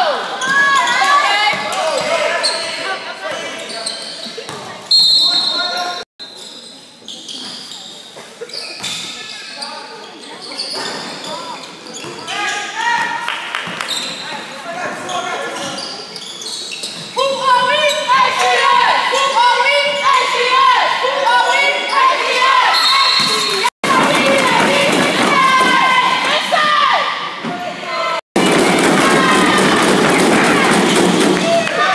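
Basketball game in a gym: the ball bouncing on the hardwood floor, short high squeaks, and players and spectators calling out, echoing in the hall. The voices grow louder and busier in the second half.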